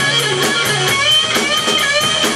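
Live rock band playing an instrumental passage: electric guitar notes bending up and down over a steady bass line and drums with fast, evenly spaced cymbal strikes.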